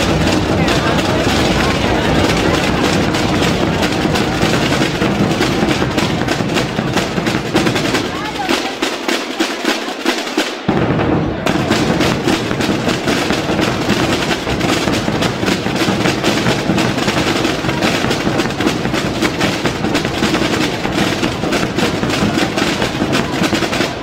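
Aragonese drum corps of snare drums (tambores) and large bass drums (bombos) playing a dense, fast rhythmic piece. About eight seconds in, the deep bass-drum strokes drop out for a couple of seconds, leaving the snare drums alone, and then come back in under them.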